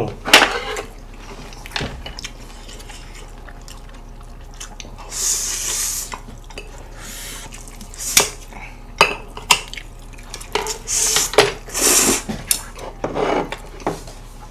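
Eating sounds: chopsticks clicking against plates and bowls in sharp separate strikes, and a few slurps of bibim noodles, each about a second long.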